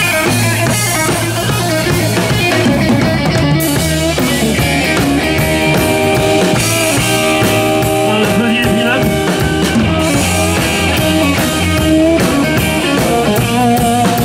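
Live rock band playing: electric guitar, bass guitar and drum kit driving a steady beat.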